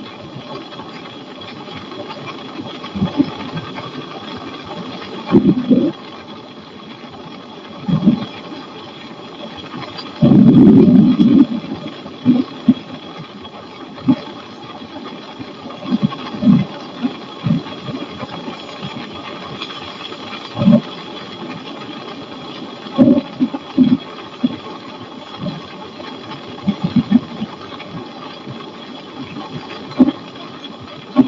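Flexwing microlight trike's engine and propeller droning steadily in cruise. Irregular short low thumps break through it every second or two, with a longer low rush about ten seconds in that is the loudest sound.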